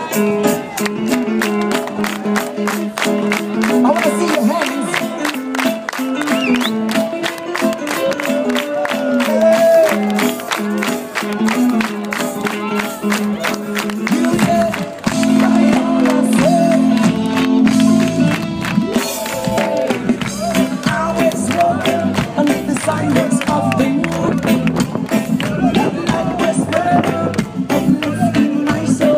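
A live band playing on stage, with singing over a steady drum beat. The bass end fills in and the music grows fuller about halfway through.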